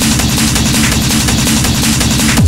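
Schranz / hard techno DJ mix in a short breakdown: the kick drum drops out, leaving a choppy, stuttering synth riff repeating under steady hissy high percussion.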